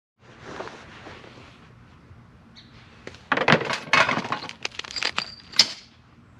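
A soft rustle, then from about three seconds in a quick run of sharp clinks and knocks of hard objects being handled, with a brief ringing tone near the end.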